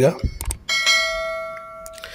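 A bell-chime sound effect from an animated subscribe-button overlay: a short click, then a bright ding that rings and fades for about a second before cutting off.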